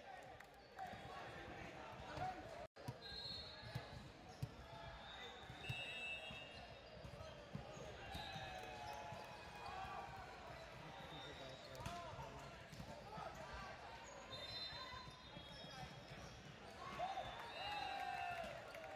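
Volleyball match sounds in a large echoing gym: players and spectators calling and chattering, with several sharp knocks of the ball being struck, most of them in the first few seconds.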